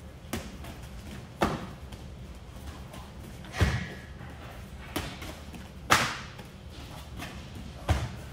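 Padded strikes landing in a kickboxing partner drill: gloved jab and cross punches and a shin-guarded switch body kick smacking into the partner's gloves and arms as he blocks and covers. About six separate thuds, the loudest just past the middle and at the very end.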